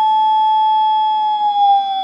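Steady electronic test tone from a GK IIIb scrambler's output. About a second in it starts to slide lower, while fainter higher tones drift alongside. The pitch falls because the scrambler inverts the tone: the generator's input frequency is being raised.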